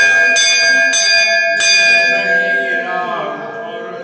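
Temple bell struck about four times in quick succession, each stroke ringing on with clear lingering tones that fade away over the next second or so.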